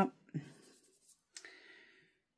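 Paper being handled on a cutting mat: faint rustling of cardstock under the hands, with a small tap and a short scrape of paper about a second and a half in.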